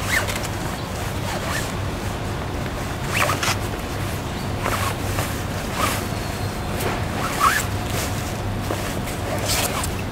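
Bimini top fabric rustling in short swishes every second or two as a metal bow tube is slid through its sleeve and the fabric is bunched along it by hand, over a steady low hum.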